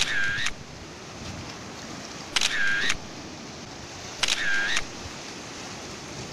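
A camera shutter sound, three identical shots about two seconds apart, over a steady hiss of surf and wind. The repeats are exact copies, as with a shutter sound effect laid over photos.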